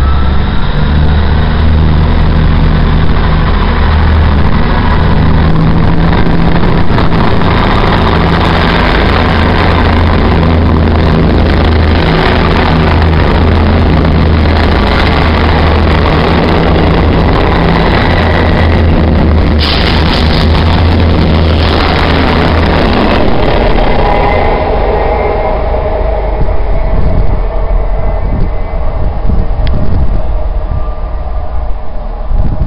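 South West Trains Class 159 diesel multiple unit running past the platform, its underfloor diesel engines giving a steady low drone. About 23 seconds in the engine note fades, leaving the rumble and clatter of wheels on the rails as the last coaches go by.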